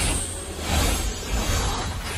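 Film sound mix of a street race: car engines running hard, with a whoosh and music underneath.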